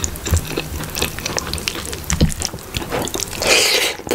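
Fingers pulling apart and squishing saucy chicken curry and rice by hand: a string of wet, sticky clicks and squelches, with a longer, louder wet noise just before the end.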